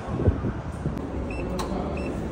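Footsteps on a concrete concourse, then two short high beeps from a stadium turnstile's barcode ticket reader, about 1.4 and 2 seconds in, as it reads the ticket and grants access.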